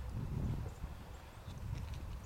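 Footsteps on a concrete driveway as someone walks with the camera, over a low background rumble.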